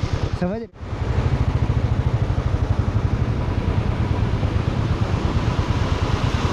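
Motorcycle engine running steadily under way, a low, evenly pulsing beat, with a constant rush of road and wind noise over it.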